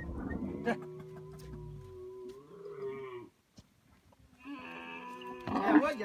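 Dromedary camels calling: a low, buzzing groan over the first two seconds, then after a short lull a louder call just before the end.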